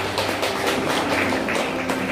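Congregation applauding: a dense patter of many hands clapping as a worship song ends.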